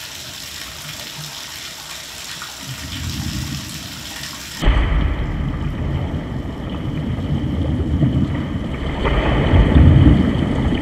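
Water running from a bathtub spout, with a low rumble building under it. About four and a half seconds in, the sound cuts abruptly to a deep, muffled rush of water that grows louder toward the end.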